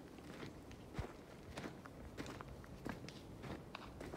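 Faint footsteps crunching on dry dirt and gravel while walking, with one firmer step about a second in.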